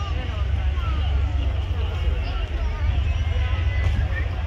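Background chatter of an outdoor crowd over a steady low rumble, like wind buffeting the microphone.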